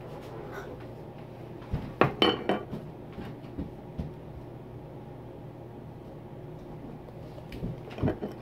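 Containers handled on a tabletop: a quick cluster of knocks and clinks about two seconds in and a couple more around four seconds, then quieter handling as baking soda is shaken from its cardboard box into a small glass jar of canola oil.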